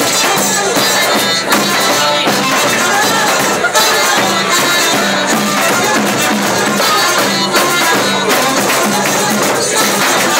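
Live band music: flute and violin playing over a drum kit in a steady, busy rhythm.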